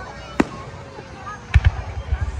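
Aerial fireworks shells bursting: one sharp bang about half a second in, then two more in quick succession near the end. Voices of the watching crowd run underneath.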